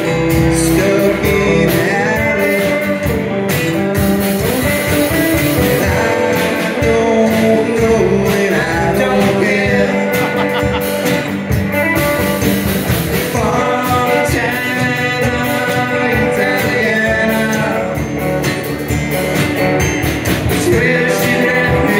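Live band playing: electric and acoustic guitars, electric bass and a drum kit.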